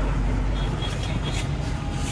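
Steady low rumble of background road traffic under a broad even hiss.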